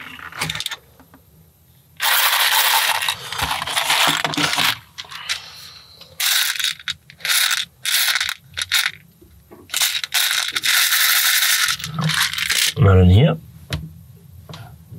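Loose plastic LEGO bricks being rummaged through in a parts tray, clattering and clinking in long stretches with short pauses. Shortly before the end, a brief, loud, low-pitched sound.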